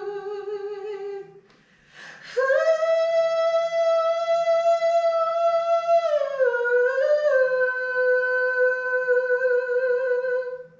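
A single woman's voice singing long wordless backing-vocal notes with a light vibrato and no accompaniment. A held note stops about a second in. After a breath, a higher note is held, glides down about six seconds in, and is sustained on the lower pitch.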